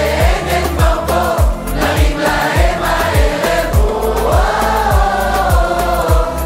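Upbeat Hebrew pop song sung by a group of voices together, over a steady kick-drum beat of about two beats a second.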